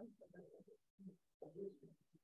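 Faint, muffled conversation of a few people away from the microphone; the words can't be made out.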